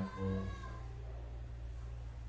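A drawn-out, wavering vocal tone that falls and fades within the first second, then a steady low hum.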